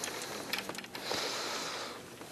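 A few light knocks, then a short high rustling hiss lasting under a second: handling noise from a flip-chart easel being set up and steadied.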